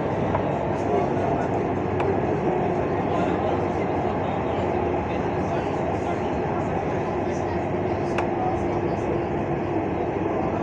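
Dubai Tram car running along its track, heard from inside: a steady rumble of wheels on rail with a hum that grows stronger in the second half, and two sharp clicks.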